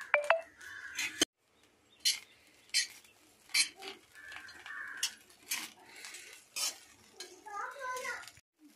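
Metal ladle knocking and scraping against a black wok as fried rice is stirred, with a sharp knock about every half second to a second. The sound drops out briefly about a second in.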